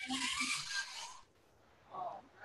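A scratchy scraping for about a second, an oil pastel stroke drawn across paper, then quiet.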